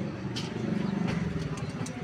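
A motor vehicle's engine running in the street, a low pulsing hum that grows louder through the middle and then eases off.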